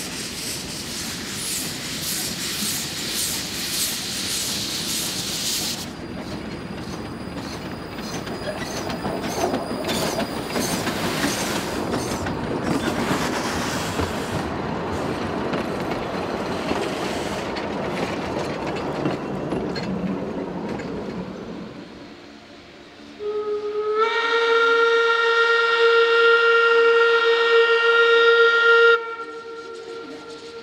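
Amamiya No. 21, a narrow-gauge forest-railway steam locomotive, approaching with steam hissing from its cylinder cocks. Its train of log cars then rattles past over the rail joints. Near the end comes one long, loud blast of its steam whistle, about six seconds.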